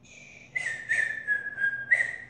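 Someone whistling: one long high note that starts about half a second in, flicks up briefly and slides slowly down in pitch, then jumps back up near the end.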